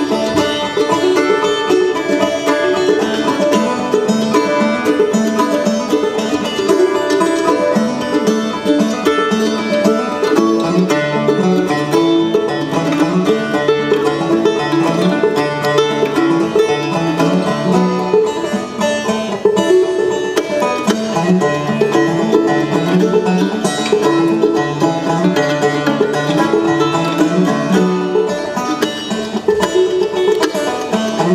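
Live bluegrass band playing a tune: a five-string banjo rolling over strummed acoustic guitars and a walking upright bass line.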